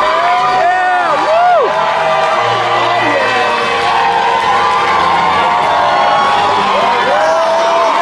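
Large arena crowd cheering and yelling, many voices at once, with repeated rising-and-falling whoops near the start and again near the end.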